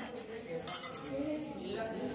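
Light clinks of glass and steel vessels being handled, over several people talking.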